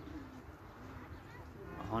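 A dove cooing faintly: a few soft, low coos.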